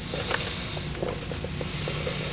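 Steady low hum with hiss, as from an old videotape recording, with a few faint clicks and rustles.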